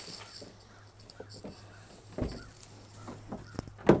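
Nissan NV200 cargo van's door being unlatched and swung open: a dull clunk about halfway through and a sharp click near the end, over a low steady hum.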